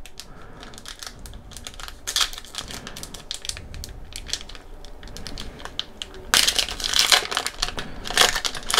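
A foil trading-card pack wrapper crinkling and tearing as it is pulled open by hand, with a denser, louder run of crackling near the end as the pack comes apart.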